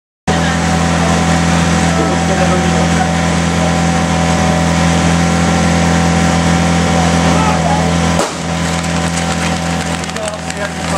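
Fire-sport portable fire pump engine running loudly at high, steady revs, its pitch dipping briefly about eight seconds in, with crowd voices underneath.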